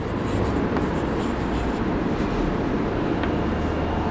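Chalk scratching on a chalkboard as a word is written, over a steady low background rumble.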